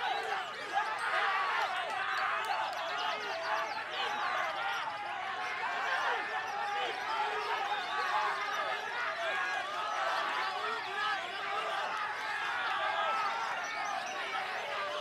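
A dense, continuous chorus of caged songbirds singing at once, with white-rumped shamas among them: many overlapping whistled phrases and chirps, and a quick high trill about a second in.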